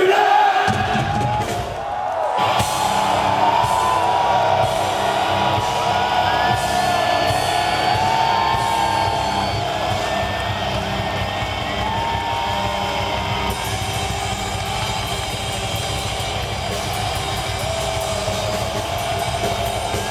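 A live metal band playing loud over a drum kit, with long held notes and no vocals, heard from within the crowd with fans whooping and cheering. There is a brief dip about two seconds in, then the music carries on.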